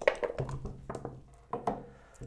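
Backgammon dice shaken in a dice cup and thrown onto the wooden board: a quick run of sharp clicks and knocks as they rattle and settle.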